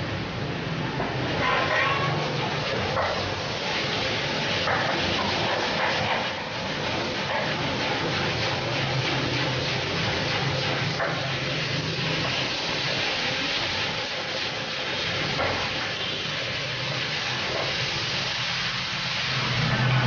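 Beef cubes, bell peppers and onions sizzling steadily in a hot pan over a gas flame as they are stir-fried, with occasional clicks of the spatula against the pan.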